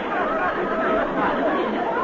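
Live studio audience laughing, many voices together at a steady level.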